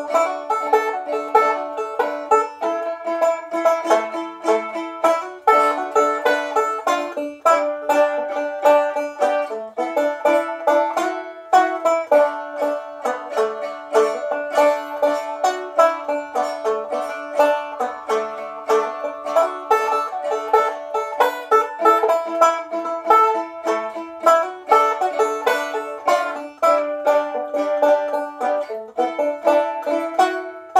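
Gold Tone AC-4 open-back tenor banjo and a Jaromin Boondocker walking dulcimer (dulcitar), tuned DADD, playing an instrumental folk tune together as a duet of rapid plucked notes.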